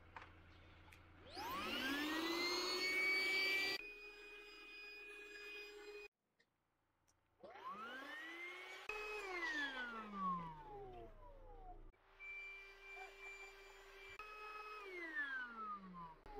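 Small handheld electric air pump inflating camping air pads: its motor spins up with a rising whine, runs at a steady pitch, and winds down with a falling whine. This happens several times in short sections, with abrupt cuts between them.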